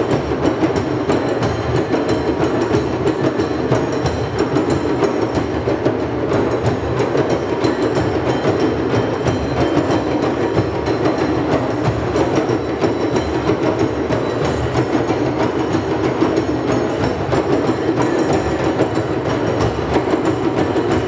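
Many djembes played together by a large drum circle: a dense, steady mass of hand-drum strokes that never pauses.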